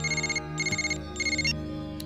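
Mobile phone ringtone: three short bursts of a high, fluttering electronic trill.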